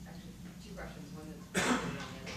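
A person coughing once, sudden and loud, about one and a half seconds in.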